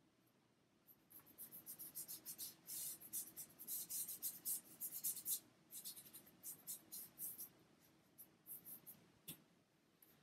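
Paintbrush working acrylic paint on a birch wood panel: a run of quick, faint scratchy strokes that thins out over the last few seconds, with a single sharp tap near the end.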